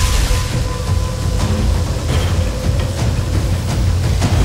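Loud cinematic sound design for a glowing energy-beam and rings effect: a dense, steady low rumble with hissing crackle over it.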